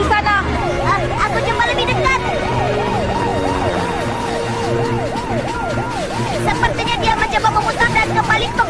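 An emergency siren in a fast yelp, its pitch sweeping up and down about three times a second.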